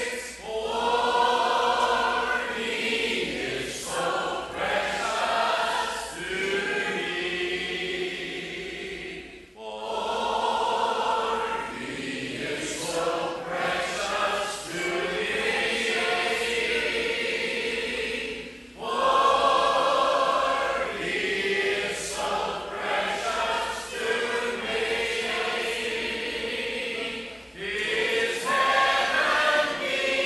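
A group of voices singing a hymn together in long phrases, with short breaks about ten seconds in and again near twenty seconds.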